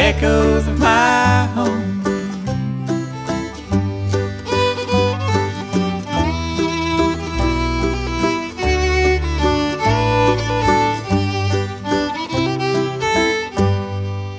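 Old-time string band instrumental break: fiddle carrying the melody over banjo and a steady bass part.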